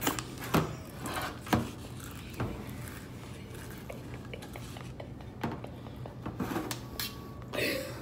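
Scattered light clicks and knocks from a cardboard Pringles can being handled at the table, over a low steady hum.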